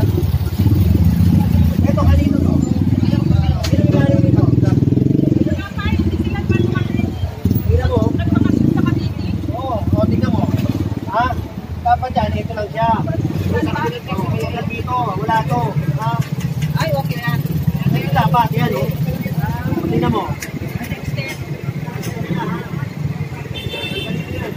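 A vehicle engine runs close by, loudest in the first few seconds, with people talking over it.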